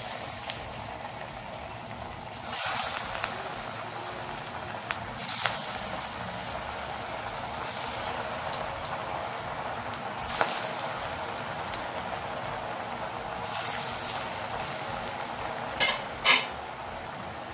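Beetroot vadai deep-frying in hot oil in a steel kadai: a steady sizzle, with a few brief louder spits every few seconds.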